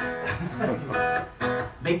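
Acoustic guitar strummed, chords ringing between strokes, with a man's sung word starting near the end.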